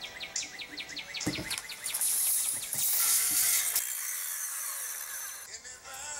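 Hand work on 2x4 lumber with a tape measure and pencil: a quick run of clicks, a thump, then a scratchy rasp that is the loudest part. Faint background music.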